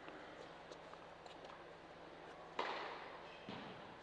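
Tennis ball knocks echoing in a large indoor tennis hall. A sharp knock comes about two and a half seconds in and rings on in the hall, then a duller thump follows about a second later, over faint scattered taps and a low steady hum.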